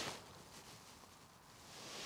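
Near silence: faint outdoor background, with a soft hiss swelling near the end.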